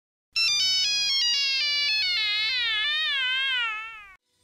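Electronic synthesized intro jingle: a single synth tone that starts in quick stepped notes, then slides up and down in a wavering glide and fades out near the end.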